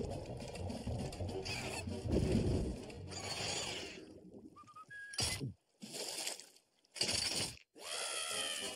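Cartoon sound effects: a low, rumbling crashing noise for about four seconds, then three short noisy bursts with sudden silences between them.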